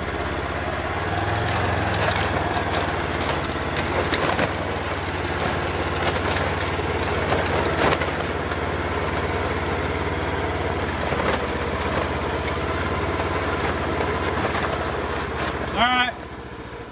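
Polaris Ranger side-by-side UTV engine running steadily at low speed under load as it tows a wooden chicken tractor across grass, with scattered knocks and rattles.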